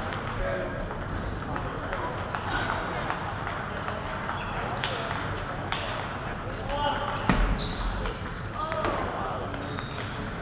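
Table tennis ball clicking off the rackets and table in a short rally, a handful of sharp clicks starting about five seconds in, over a steady murmur of voices in the hall.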